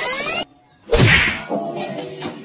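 A rising glide cuts off abruptly, then after about half a second of silence comes one loud, sudden crack with a falling tone that rings on briefly.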